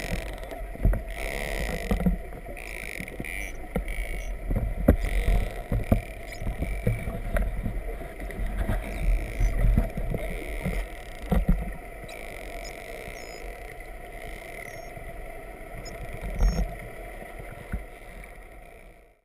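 Underwater recording of false killer whales: scattered sharp clicks and a few brief high chirps near the end, over a steady hiss and uneven low water noise.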